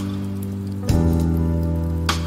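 Instrumental background music: held chords that change to a new chord with a sharp percussive hit about a second in.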